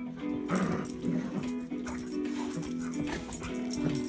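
Golden retrievers vocalizing as they play tug-of-war, with a short sound about half a second in and another near the end, over Christmas music playing throughout.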